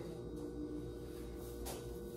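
Quiet room with a steady hum, and a brief soft rustle of cotton cloth about one and a half seconds in as a T-shirt is pulled off over the head.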